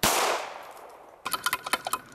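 A single 9mm pistol shot, its report trailing off over about a second. Near the end, a quick run of metallic clinks and rattles from the shot-up steel padlock being handled on its hook.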